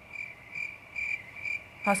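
Cricket chirping in an even, steady rhythm, a little over two short chirps a second: the stock comedy sound effect for an awkward silence.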